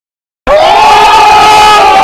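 A loud, sustained shout from several voices, held on one pitch, cutting in suddenly about half a second in after a moment of silence.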